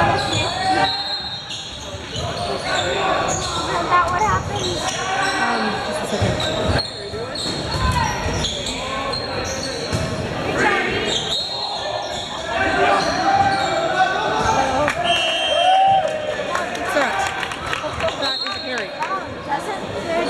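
A volleyball being struck and bouncing during a rally in a school gym, several sharp hits echoing in the large hall, with players' calls and spectators' voices throughout.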